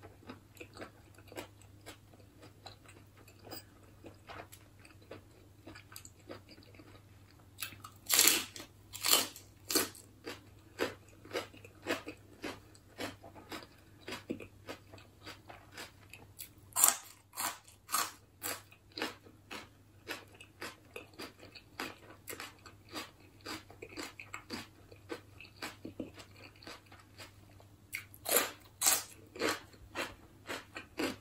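Close-up chewing and crunching of crisp lettuce-leaf wraps filled with snail salad, a steady run of small crunches with louder bites about eight seconds in, around seventeen seconds, and near the end.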